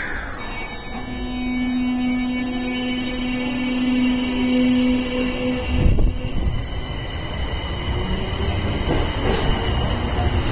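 Kita-Osaka Kyuko 9000 series subway train pulling out of the platform: a steady tone from about a second in for some four seconds, then the louder rumble of the cars rolling past as the train gets under way, with a steady high whine over it.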